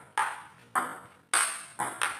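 Table tennis ball knocked back and forth in a rally: four sharp clicks of ball on bat and table, about one every half-second, each dying away quickly.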